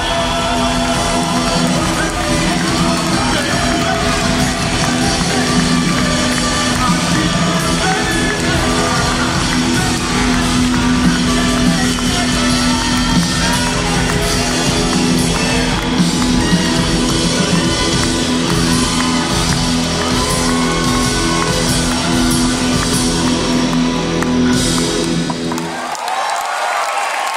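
Live rock band playing the closing section of a song: electric guitars, drums and keyboards over long held bass notes, heard from within the audience in a large hall. The music stops abruptly at the very end.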